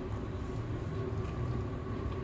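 Steady low background hum, with a few faint soft chewing sounds as a bite of fried jalangkote pastry is eaten.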